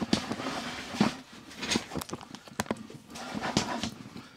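Handling noise from a handheld camera being turned around and moved: irregular knocks, clicks and rustling, with a sharper knock about a second in.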